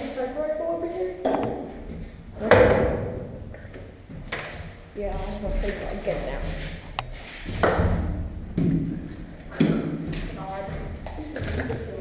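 Indistinct voices with several sharp knocks and thumps, echoing inside a steel shipping container; the loudest knock comes about two and a half seconds in.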